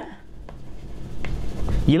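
Chalk writing on a blackboard: faint scratching strokes as a short word is written.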